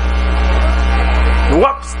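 A steady, unchanging held tone over a loud low electrical hum, then a man's voice starts speaking near the end.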